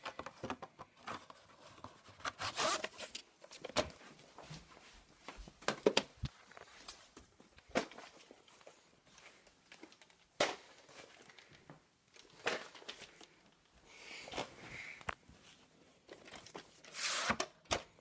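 VHS tapes and their cases being handled: irregular clicks, light knocks and rustling as they are picked up and turned over, with the loudest rustling near the end.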